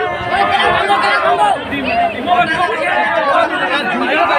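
A packed crowd chattering, many voices talking and calling out over one another at once.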